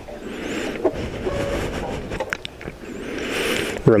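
Sports motorbike's brakes squeaking as it rolls slowly down a slope with the engine off, rising and falling in swells with a few thin squealing tones. The rider takes the squeak as a sign that the brakes need changing.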